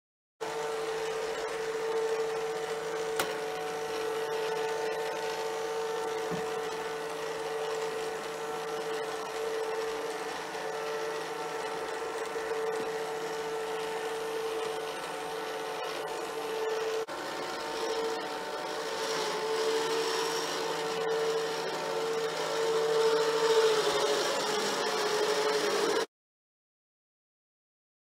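Gtech upright vacuum cleaner running steadily, a loud high motor whine that wavers slightly in pitch in the last several seconds.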